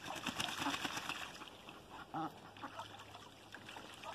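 A duck bathing in a shallow plastic kiddie pool, splashing the water hard for the first second or so, then quieter water sounds. A single short quack comes a little past the middle.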